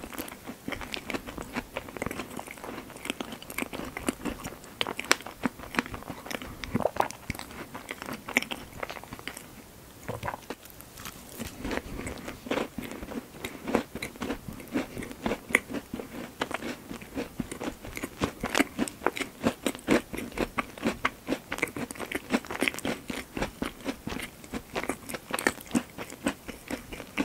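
Close-miked chewing of a mouthful of strawberry and cream cake: many small, wet mouth clicks and smacks in an irregular stream, easing briefly about ten seconds in.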